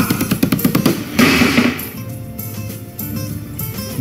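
Drum roll of rapid snare strikes ending in a cymbal crash about a second in. The crash fades into quieter held musical tones.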